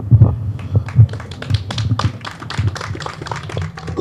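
Small crowd applauding: a dense patter of irregular hand claps.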